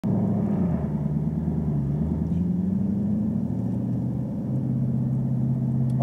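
Camaro SS 1LE's 6.2-litre V8 running at low revs, around 2,000 rpm, as the car pulls away from a standstill and rolls slowly. It is heard from inside the cabin as a steady low engine note, with a small dip in pitch under a second in and a slight rise towards the end.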